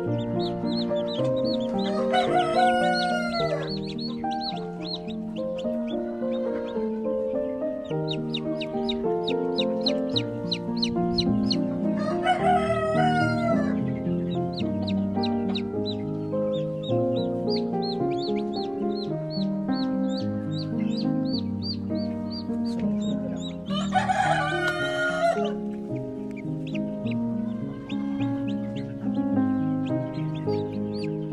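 Background music with held notes, over which a rooster crows three times, about two, twelve and twenty-four seconds in.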